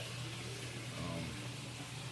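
Steady low hum under an even hiss of trickling water, from a recirculating NFT hydroponic system's pump and water running through its channels.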